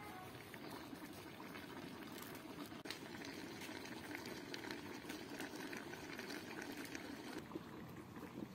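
Large pot of apples boiling over a wood fire for apple pestil: a faint, steady bubbling with scattered small clicks.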